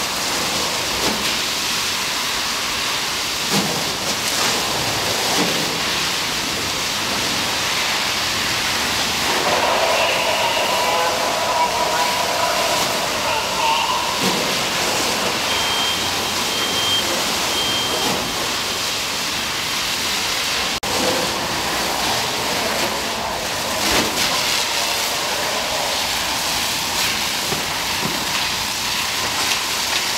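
Fire hose water stream spraying onto a burning truck: a steady rushing hiss of water and fire with water splashing on the wet concrete. Three short high beeps sound a little past the middle.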